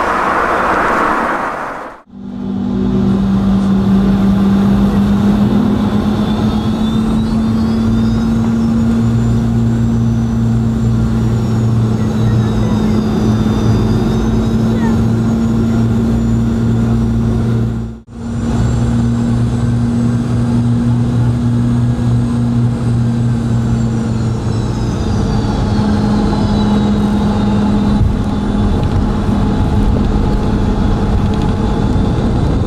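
Cabin noise of a Boeing 717 landing, its rear-mounted Rolls-Royce BR715 engines running with a steady low hum and a faint high whine that slowly rises and falls. The sound breaks off suddenly twice, and after the second break the noise continues on the runway, its tone shifting a few seconds before the end.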